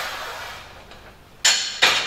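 Two sharp metallic clanks about half a second apart from the loaded bar of a Reeplex Raptor 3D Smith machine as it is lifted and unracked, after a softer rushing noise that fades during the first second.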